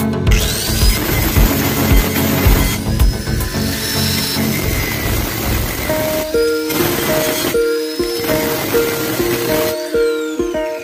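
Angle grinder with an abrasive disc grinding down a weld on a steel square tube. It starts just after the beginning and stops shortly before the end, with background music playing throughout.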